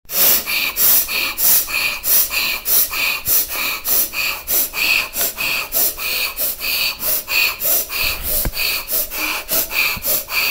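A person breathing in and out hard and fast into the microphone, about three breaths a second in an even rhythm.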